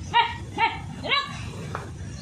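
A dog whining in three short, high yelps about half a second apart.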